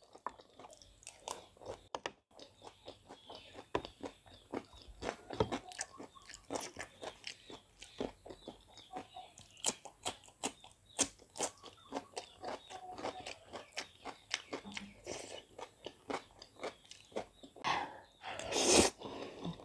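Close-miked mouth sounds of a person eating: wet chewing of spicy instant noodles with many quick smacks and clicks, and crisp crunching bites into a slice of fresh cucumber about ten seconds in.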